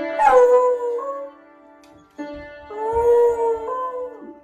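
A beagle pressing piano keys with its front paws, each press sounding a cluster of notes that rings on, and howling along. A long howl falls from high just after the first cluster, and about two seconds in a second cluster brings a howl that rises and falls, then a shorter falling one near the end.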